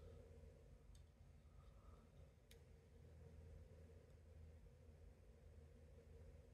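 Near silence: faint room tone with two faint ticks, about one and two and a half seconds in, from a small screwdriver bit prying at the metal hot shoe of an Epson R-D1S camera.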